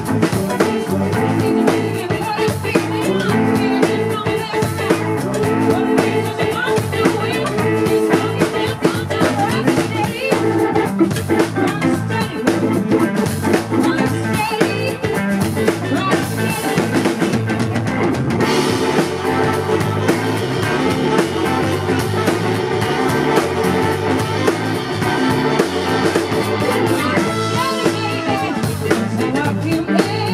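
Live rock band playing a song: drum kit, electric guitar, bass guitar and keyboard, with a woman singing into a microphone.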